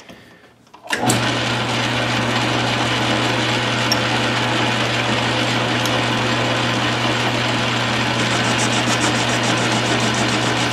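A 9-inch metal lathe switched on about a second in, its motor and drive then running steadily with a low hum as it spins a steel bar in a collet chuck.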